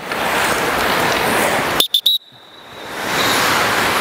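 Hockey skate blades scraping and carving the ice as several players skate backward C-cuts, a loud steady hiss. About two seconds in it breaks off with a few clicks and a short high tone, then the hiss builds back up.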